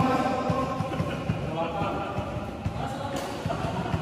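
Indistinct voices of people talking and calling out in a large indoor badminton hall, with scattered low thuds.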